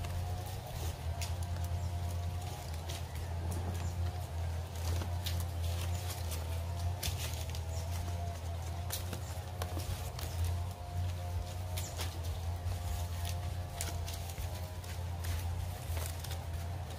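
Background music with sustained wavering tones over a steady low hum. Over it come frequent crisp clicks and crackles of green coconut-palm leaflets being bent and tucked by hand during weaving.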